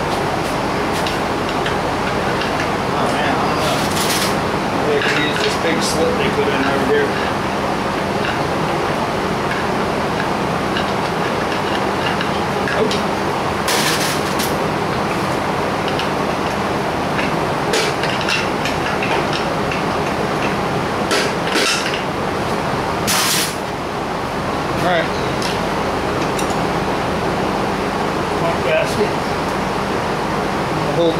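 About eight sharp taps and knocks scattered through the stretch, from a hammer striking a VW 1600 engine case to break the seal between its halves, over a steady background hum.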